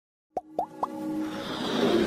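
Animated logo intro sound effects: three quick bubbly plops about a quarter second apart, then a swelling music build-up that grows louder.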